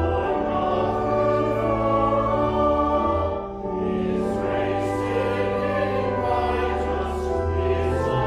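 A congregation singing a hymn together with pipe organ accompaniment: held bass notes under many voices, with a brief dip about halfway through, between lines.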